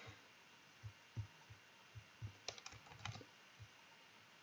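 Faint computer keyboard and mouse clicks: scattered soft low taps, with a short cluster of sharper clicks about two and a half to three seconds in.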